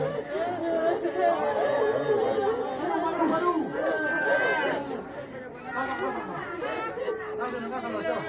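Many voices talking over one another in a crowded room, a steady mix of overlapping chatter.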